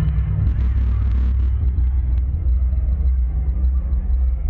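Deep, steady synth-bass drone from a concert PA at high volume, picked up close on a phone microphone as a heavy low rumble, with crowd noise faintly above it.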